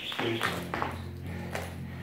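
Jump rope slapping the floor during double-unders, sharp strikes about three a second that stop a little under a second in.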